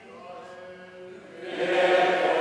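A choir chanting in long held notes: a phrase dies away at the start, and a new, louder phrase comes in about one and a half seconds in.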